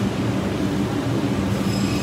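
Steady rumbling background noise with a low hum inside a large store, the kind made by refrigerated display cases, ventilation and shoppers, with no distinct event standing out.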